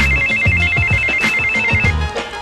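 Mobile phone ringing: an electronic ringtone that trills rapidly between two high pitches, stopping just before the end.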